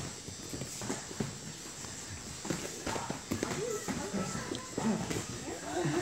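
Irregular thuds and slaps of gloved punches and kicks landing during kickboxing sparring, mixed with footsteps on the gym mats. Voices talk in the background from about halfway through.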